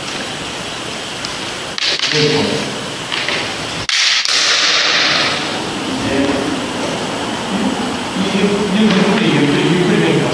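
Sharp knocks of bamboo shinai in a kendo dō-strike demonstration, two of them, about two and four seconds in, followed by a man talking.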